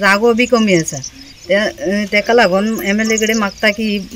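A woman speaking, with a short pause about a second in.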